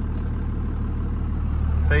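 Second-gen Dodge Ram's 5.9 L 24-valve Cummins inline-six diesel idling steadily, a constant low hum heard from inside the cab.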